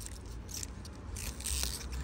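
Pea vine leaves rustling as pea pods are pulled off the vine by hand, with a sharp click about a second and a half in.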